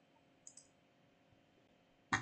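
A single computer mouse click about half a second in, against near silence.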